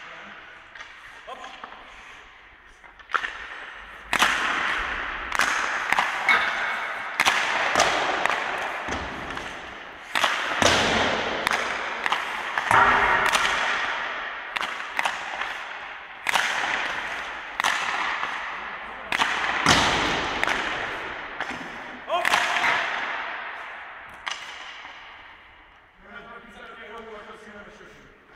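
Ice hockey shots in an empty indoor arena: a dozen or more sharp cracks of stick on puck and puck impacts, roughly one every one to two seconds after a quieter start, each ringing out in a long echo off the boards and roof.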